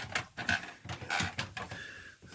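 Irregular light clicks, knocks and rustles of a handheld phone being moved about while it films.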